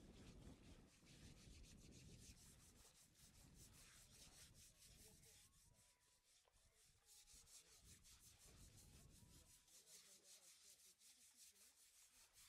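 Scrubbing on an Asian elephant's wet hide by hand, a quick run of raspy strokes several a second, over a low rumble of water that fades away near the end.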